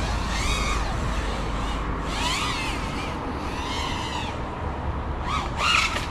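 FPV freestyle quadcopter's brushless motors and propellers whining, the pitch rising and falling with the throttle in about five swells over a low rumble.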